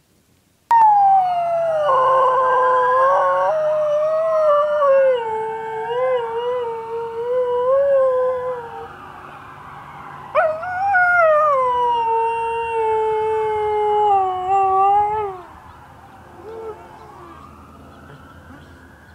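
An Alaskan Malamute howls in two long howls. The first starts suddenly about a second in and sinks slowly in pitch. The second starts about ten seconds in, falls, and stops a few seconds before the end. A siren wails faintly underneath with a slow rise and fall, and the dog is howling along to it.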